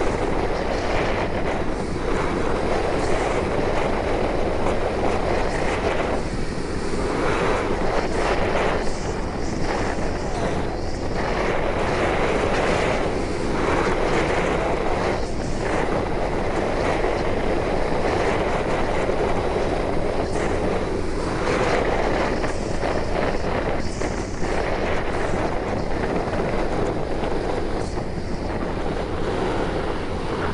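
Steady rush of wind and road noise from a moving motorbike, with wind buffeting the microphone and swelling and easing every few seconds.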